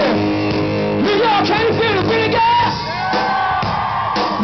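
Live hard rock band playing loudly, with electric guitars and a voice singing and shouting over them, then a long held note near the end.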